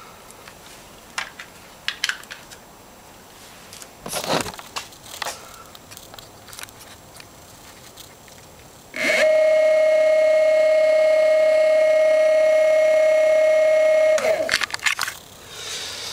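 Golden Motor BLT-650 brushless hub motor spinning with no load on 36 volts: a loud, steady electrical whine starts abruptly about nine seconds in, holds for about five seconds, then cuts off and winds down. Before it come scattered clicks and knocks from handling the battery connectors.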